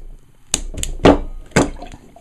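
Pen pressed down onto a wine bottle's cork to force it into the neck: four sharp knocks, the loudest about a second in.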